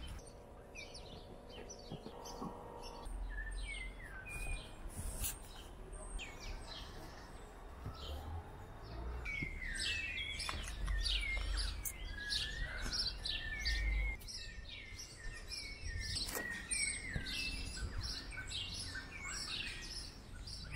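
Small birds chirping and twittering, many short quick notes that sweep up and down, busiest through the middle and second half.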